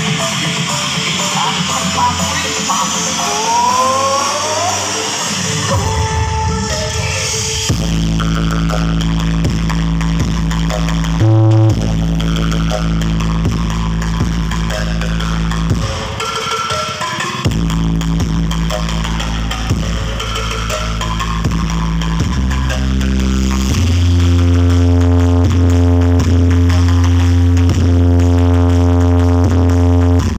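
Loud electronic dance music played through a truck-mounted sound system of stacked speaker cabinets. Long held deep bass notes come in about eight seconds in and step from one pitch to another, and from about 24 seconds one low bass note is held, louder.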